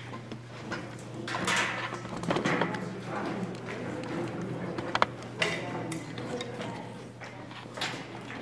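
Indistinct chatter of several people in a large hard-walled room, with footsteps and a couple of sharp knocks, one about five seconds in and one near the end, over a steady low hum.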